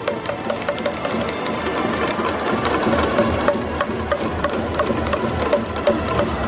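Baseball crowd under a dome cheering, with a dense clatter of sharp clacks from many handheld cheering noisemakers struck together, and a faint tune underneath.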